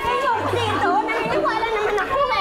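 Several people talking over one another in lively chatter, with background music underneath.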